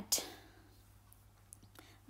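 A short breath just after a spoken phrase ends, then near silence: room tone with a faint steady low hum and two faint ticks near the end.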